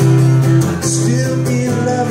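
Acoustic guitar strummed in a steady rhythm, the chord changing about a third of the way in and again near the end.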